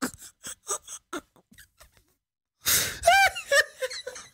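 A man laughing hard: a quick run of short breathy bursts, then, after a pause, a sharp gasping breath in and a high-pitched laugh that rises and falls.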